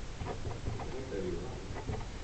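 A student's faint, low voice asking a question, with light scratching of a pen writing on paper.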